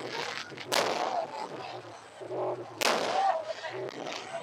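Aerial firework shells bursting: two loud bangs about two seconds apart, each trailing off over about half a second.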